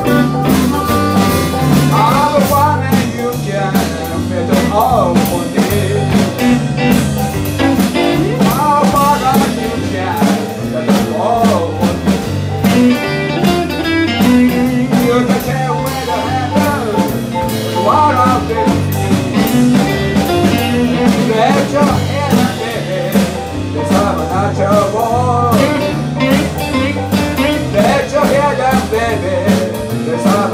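Live blues band playing a shuffle, with electric guitar, electric keyboard and a drum kit keeping a steady rhythm, and a harmonica playing at the start.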